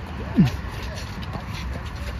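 A player's short shout, falling steeply in pitch, about half a second in, over a steady low background rumble.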